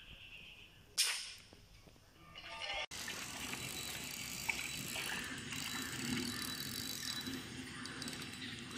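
Fishing reel being wound in, a steady ratcheting whir that starts abruptly about three seconds in. Before it, a single sharp sound about a second in.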